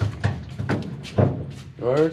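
Pliers gripping and snapping off metal wire holders from a car body, giving a few sharp clicks and knocks with one heavier thud midway. A man lets out a short "ah" near the end.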